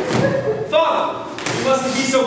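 Stage actor's voice speaking in a large, echoing hall, with a thud.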